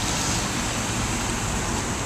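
A car passing close by on a rain-soaked street, its tyres hissing steadily on the wet pavement.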